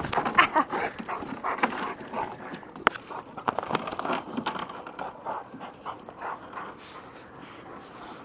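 Dogs right at the camera making short whining sounds, busiest in the first couple of seconds and fewer later, with one sharp click about three seconds in.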